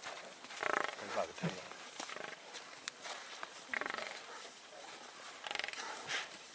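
Harsh, rasping animal calls from a pride of lions struggling with a Cape buffalo: three bursts, about a second in, near the middle, and near the end.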